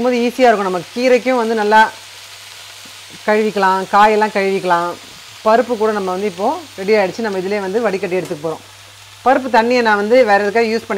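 Moringa leaves sizzling steadily in a frying pan, with a steady low hum underneath. A woman's voice talks in short bouts over it and is the loudest sound.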